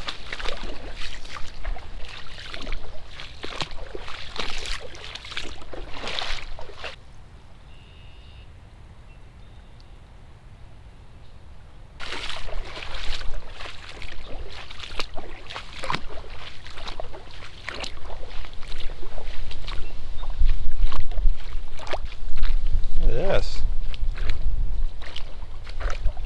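Legs wading through shallow swamp water, sloshing and splashing with each stride. The strides pause for about five seconds in the middle, then go on, with a low rumble on the microphone near the end.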